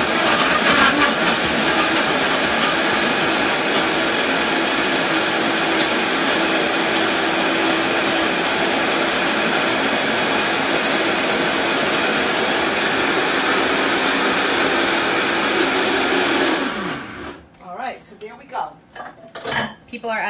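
Countertop blender running steadily at high speed, blending a thick oat, banana and date pancake batter, then switched off near the end, its motor tone falling as it winds down.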